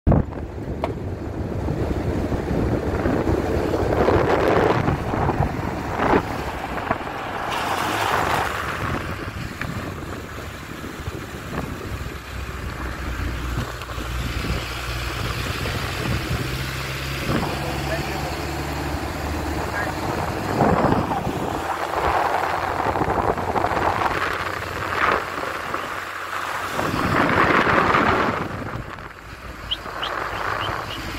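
Wind buffeting a phone's microphone held out of a moving car's window, over the car's road and engine noise, surging loudly several times.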